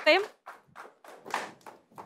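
A few faint, scattered hand claps from a studio audience, short and separate rather than a full round of applause.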